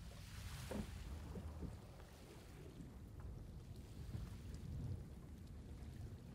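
Low, steady rumbling noise of wind and rushing water, with a few faint soft knocks.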